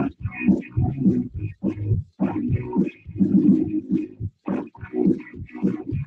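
Shouting and grunting voices of football players on the field, as picked up by a camera worn on an official's cap, coming in quick choppy bursts.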